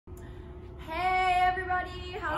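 A woman's voice calling out one drawn-out, sing-song greeting, held at a level pitch for about a second. It starts shortly after the beginning and stops just before the end.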